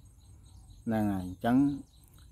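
Faint, steady high-pitched chirring of insects in the background, with a man's voice saying a short phrase in the middle.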